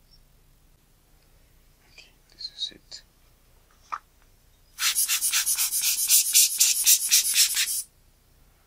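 A few faint small clicks and scrapes, then a loud, rapid rubbing or brushing noise, about six strokes a second, for about three seconds before it stops suddenly.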